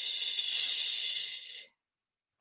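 A woman's long hissing exhale close to the microphone, breathing out after a "whew". It cuts off abruptly about one and a half seconds in.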